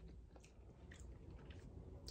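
Faint chewing of a mouthful of deviled egg, with a few soft, scattered mouth clicks.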